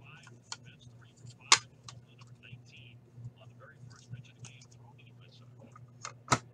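Trading cards and plastic card holders being handled on a tabletop: small irregular clicks, taps and rustles, with one sharp click about a second and a half in. A steady low hum runs underneath.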